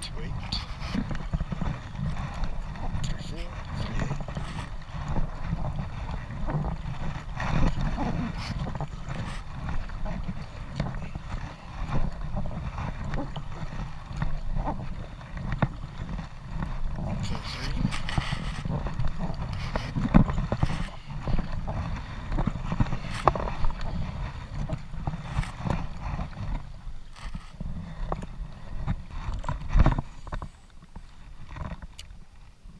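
Wind buffeting the camera's microphone in an uneven low rumble, with scattered splashes and knocks from kayak paddle strokes in the water.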